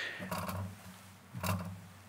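Two short, low hums from a man's voice at a lectern microphone: one soon after the start, a second about a second and a half in.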